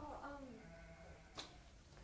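A student's faint voice answering the teacher's question, then a single short click.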